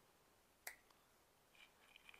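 Near silence, broken once by a short, faint click about two-thirds of a second in.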